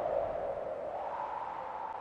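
The final electric guitar chord of a heavy metal track ringing out after the band stops, a sustained tone slowly fading away.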